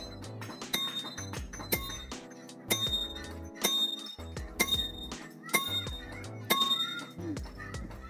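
Background music over hand-hammer blows on hot iron laid on a steel rail anvil, about one strike a second, each with a short metallic ring.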